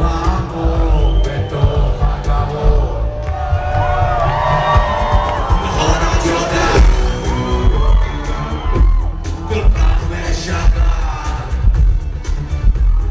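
A live rock band with electronic backing plays loud, bass-heavy music with electric guitar and a pounding beat, heard from within the concert crowd.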